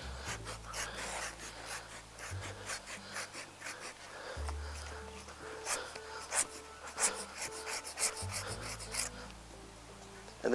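Hand pruning saw with coarse teeth rasping through a small live branch stub in short, irregular strokes, making the final removal cut at the branch collar; the strokes get louder for a few seconds past the middle before the cut is through.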